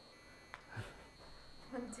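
Quiet room tone with a faint, steady high-pitched electronic whine, broken by a single faint click about half a second in; a voice starts near the end.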